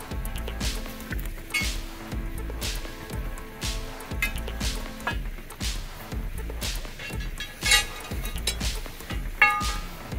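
Background music with a steady beat, about one beat a second, over held tones. Two sharper knocks stand out near the end, the second being the loudest sound.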